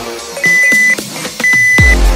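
Two electronic countdown-timer beeps, each about half a second long and one second apart, over quieter electronic music: the last seconds of a workout rest interval ticking down.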